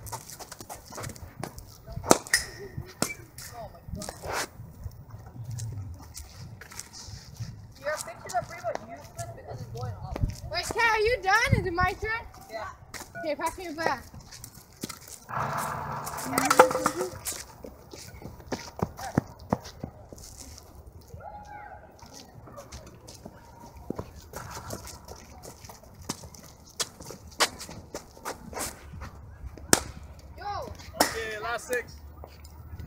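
Sharp knocks now and then, the loudest about two seconds in and again near the middle: a cricket ball struck by the bat and landing on the pitch and net, with indistinct voices talking between them.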